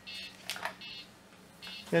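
Amiga disk drives stepping as Workbench 1.3 loads from them: short buzzy bursts recurring about every three-quarters of a second.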